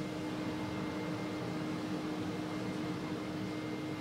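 Steady electrical hum, one constant low tone over an even hiss, unchanging throughout.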